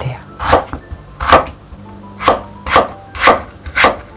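Kitchen knife cutting raw potato into thick sticks on a wooden cutting board: about six sharp knife strikes against the board, unevenly spaced.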